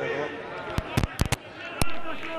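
Five sharp bangs within about a second, the last and loudest near the end, over steady stadium background noise.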